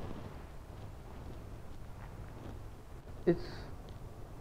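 Quiet room tone with a steady low hum and a few faint ticks of movement. A man says one short word near the end. The phonograph's music has not started yet.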